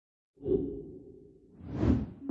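Quizizz quiz-game transition sound effect: a low hit about half a second in that fades away, then a rising whoosh that swells to its loudest near the end.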